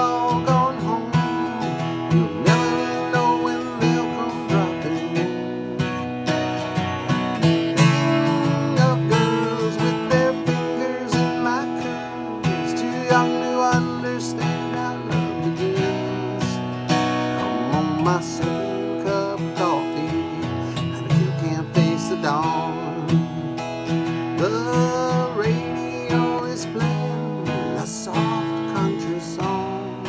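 Steel-string dreadnought acoustic guitar strummed in a steady country-folk rhythm through an instrumental break. A higher melody line slides in pitch above the chords.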